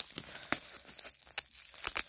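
Bubble wrap and crumpled brown kraft packing paper crinkling and rustling as they are handled and unwrapped, with a few sharp crackles.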